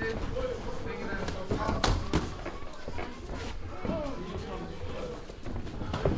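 Sparring strikes landing on padded gloves and shin guards: a few sharp smacks, the loudest two close together about two seconds in, under talking and calling voices.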